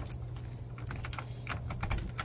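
Light metallic clicks and jingling of a bunch of keys as a key is worked into a Master Lock padlock on a door hasp, with a quick run of clicks near the end.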